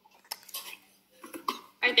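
A few light clicks and clinks of small hard objects, with a faint murmur of voices, before a voice says "right" at the end.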